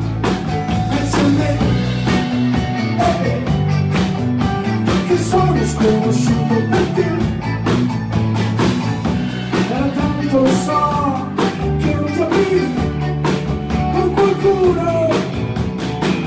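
Live rock band playing a song: drum kit keeping a steady beat under electric guitars, bass and keyboards, with a man singing the lead.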